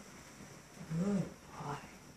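A dog's two short, low vocal sounds about a second in: a brief whining groan that rises and falls in pitch, then a shorter one just after.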